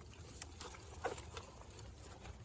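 Faint scratching and a couple of light clicks from hands handling a stroller's harness strap and seat fabric.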